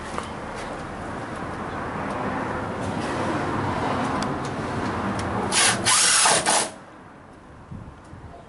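Cordless drill driving a self-tapping screw into the side profile of a retractable screen door. It builds gradually, is loudest for about a second just past halfway, then stops suddenly.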